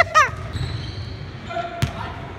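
A short laugh, then a single sharp basketball impact near the end, with a brief squeak just before it.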